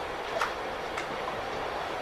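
Steady hiss of room noise, with two faint clicks about half a second and a second in.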